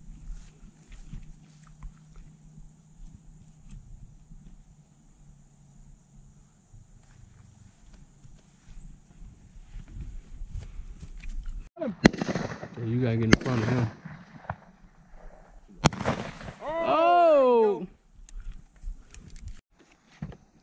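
Three loud shotgun shots at doves, about 12, 13 and 16 seconds in, with men's voices calling out after them, including one long drawn-out shout after the last shot.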